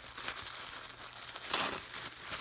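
White tissue paper rustling and crinkling as a wrapped gift is handled and its ribbon slid off, with a louder crinkle about one and a half seconds in.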